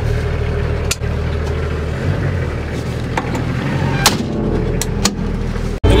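Toyota Coaster bus engine running, heard from inside the cab as a steady low hum, with a few sharp knocks and rattles from inside the bus. It cuts off suddenly just before the end.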